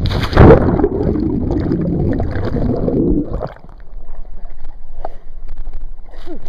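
Lake water splashing and churning right at the microphone: a sharp, loud splash about half a second in, then rough sloshing and gurgling that drops away at about three and a half seconds, with scattered small splashes after.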